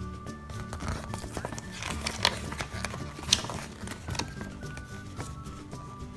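Background music, with paper crinkling in the middle as a folded instruction leaflet is handled and unfolded, including two sharp crackles about two and three seconds in.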